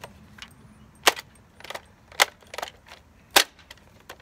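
Sharp plastic clicks and clacks from a toy foam-dart blaster being handled during a magazine reload: three loud clicks about a second apart, with fainter ones in between.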